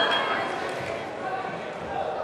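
Voices of people in a large, echoing sports hall, with dull thumps mixed in.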